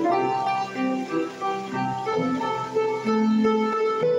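Piano played live: a slow gospel melody in the upper notes over chords in the left hand, each note struck and left to ring.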